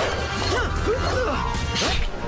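Cartoon fight sound effects over an action music score: a quick run of zipping swishes that rise and fall in pitch as glowing laser blades are thrown, mixed with crashing hits as they strike the wall.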